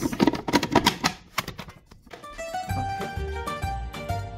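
Plastic clicks and clatter of the food processor's bowl and lid being handled for about the first second, then instrumental background music with plucked-string notes and a steady low bass pulse starts about two seconds in.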